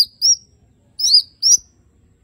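Male green leafbird (cucak ijo) singing short, sharp chirped notes, each bending down in pitch, delivered in quick pairs about a second apart.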